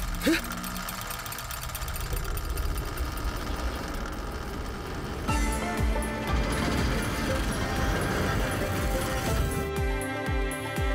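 Soundtrack music over a fast whirring, ticking clockwork-gear sound effect as the automaton's mechanism starts turning. About five seconds in the music swells, with clearer tones and low pulses.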